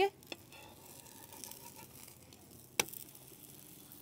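A paratha being flipped on an iron tawa with a slotted metal spatula: faint sizzling and two clicks, the sharper one about three seconds in.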